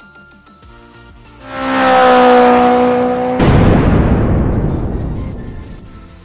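Cinematic intro sound effect: a steady tone swells up with a rising whoosh, then is cut off about three and a half seconds in by a deep booming hit that fades away over the next two seconds.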